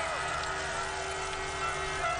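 Steady crowd noise from spectators at a biathlon race, with a low steady hum underneath.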